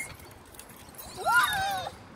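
A child's short high-pitched squealing vocal sound about a second in, rising and then wavering down.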